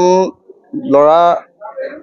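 A man speaking in Assamese, a short word and then one drawn-out syllable with a slowly rising pitch about a second in, with brief pauses around it.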